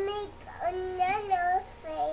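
A toddler's voice singing wordless held notes: a short one at the start, a longer one from about half a second in, and another beginning near the end.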